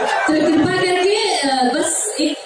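A woman singing a line of verse, her voice held on long notes in a large hall.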